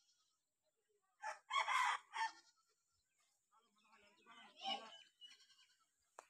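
A rooster crowing once, about a second in, followed by a fainter, broken call a couple of seconds later.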